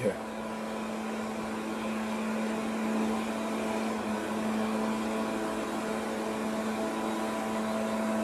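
A steady low hum with a hiss over it, unchanging in pitch and level.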